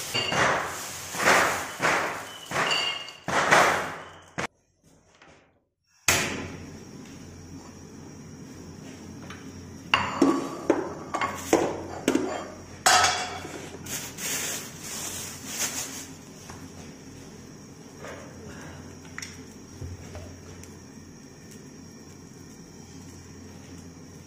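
A plastic bag being handled and crinkled for a few seconds, then after a short break a run of sharp knocks and clinks of kitchenware around a wok on a gas burner.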